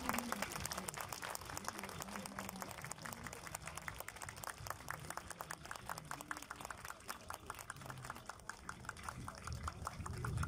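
Light, scattered hand-clapping from a small outdoor audience, many quick claps with faint voices underneath.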